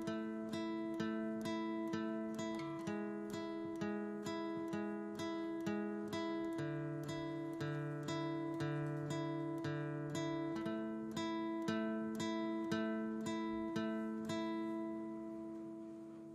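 Acoustic guitar picked slowly with alternate picking, about two to three notes a second: a repeated high note on one string against a lower note on the next string that steps down twice and then climbs back. The last note rings out and fades near the end.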